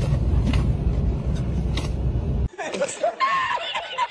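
Low steady rumble of a vehicle interior, cut off abruptly about two and a half seconds in by a man laughing hard.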